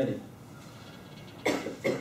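A person coughing twice in quick succession, two short sharp coughs about a third of a second apart, near the end.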